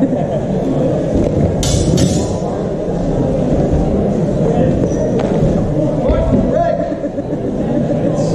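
Voices and chatter echoing in a large sports hall, with two sharp clinks close together about a second and a half in as steel longswords knock during a grappling exchange.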